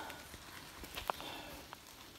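Faint footsteps on wet dirt and grass: a few soft, irregular steps.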